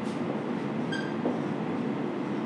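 Marker pen writing on a whiteboard, giving one short high squeak about a second in, over a steady background noise.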